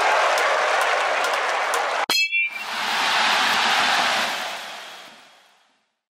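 Stadium crowd noise that stops abruptly about two seconds in. A sharp metal-bat ping rings briefly, and a swell of crowd noise follows and fades away to nothing.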